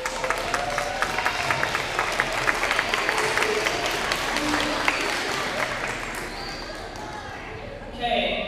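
An audience of schoolchildren clapping, with a few voices among the claps. The applause fades out near the end.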